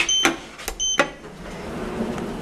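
Schindler 5300 MRL elevator's car buttons giving two short high beeps as they are pressed, each followed by a click. From about a second in, a low steady mechanical whirr from the elevator follows.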